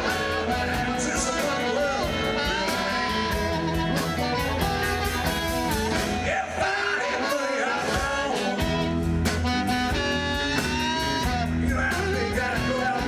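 Live electric blues band: an amplified harmonica played through a cupped handheld microphone, with bending notes, over electric guitar, upright bass and drums.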